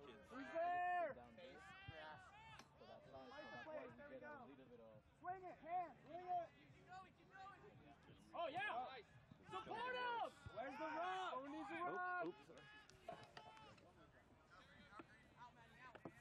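Several voices calling and shouting across an open playing field, coming on and off for most of the stretch, then dying down for the last few seconds.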